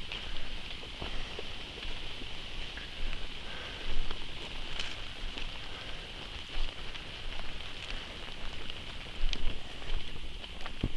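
Footsteps of people and a dog walking a leafy dirt trail, with scattered crunches and clicks, over a steady high insect drone. A low rumble from the moving body-worn camera runs underneath.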